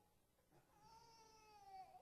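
A faint, high-pitched drawn-out whine with overtones, lasting just over a second and dipping in pitch at the end.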